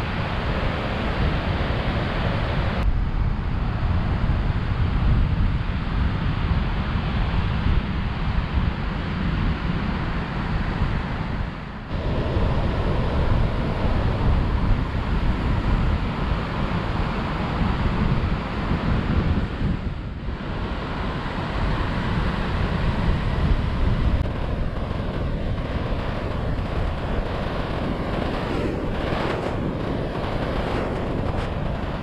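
Gulf surf breaking and washing up a sandy beach, with strong wind buffeting the microphone; the sound shifts abruptly a few times.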